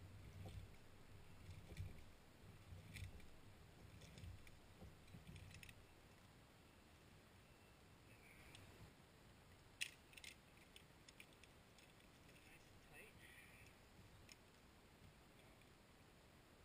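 Near silence with a few faint, scattered clicks, the sharpest about ten seconds in, over a faint low rumble during the first few seconds.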